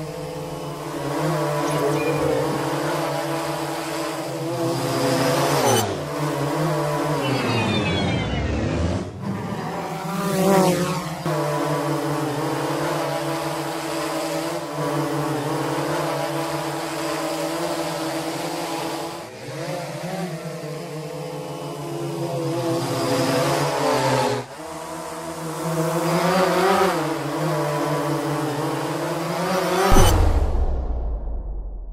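Quadcopter drone's motors and propellers buzzing in a steady multi-tone hum that wavers as the rotors change speed. The pitch sweeps down sharply about a quarter of the way in, then climbs and dips again a few times later.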